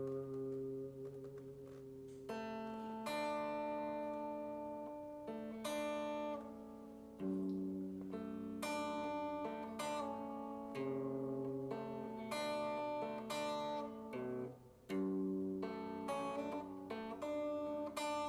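Semi-hollow electric guitar, capoed at the second fret, fingerpicked slowly: single plucked notes on the A, G, B and high E strings ring into one another in a short turnaround figure, with a brief break near the end before the pattern resumes.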